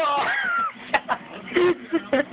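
A person's high-pitched vocal squeal, rising and falling in pitch for under a second, followed by a few short voiced bursts.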